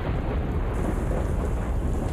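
Heavy rain pouring down, with a deep low rumble underneath.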